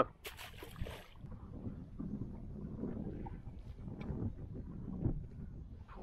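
Wind buffeting the microphone in a low, uneven rumble, with a short burst of noise just after the start and scattered light knocks and clicks of fishing gear being handled.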